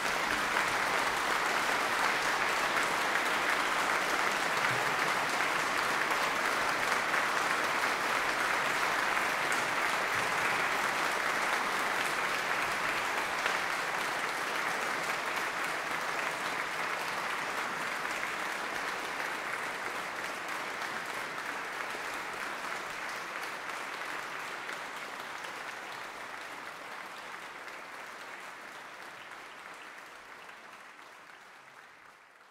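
Audience applauding, a dense steady clapping that slowly dies away over the last ten seconds or so.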